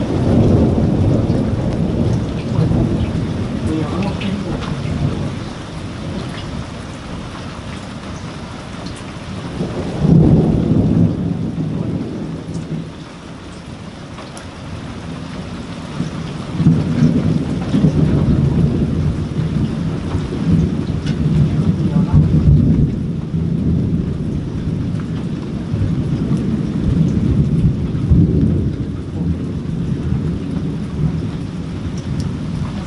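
Thunder rumbling over steady rain during a moderate thunderstorm. There is a roll of thunder at the start, another about ten seconds in, and a long stretch of rolling rumble through the second half.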